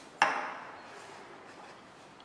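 A container knocking once against the tabletop: a single sharp knock with a short ring-out.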